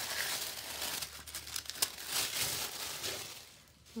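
Thin tissue-paper wrapping crinkling and rustling as hands pull it open from around a stack of paper pads, in quick, irregular rustles that fade near the end.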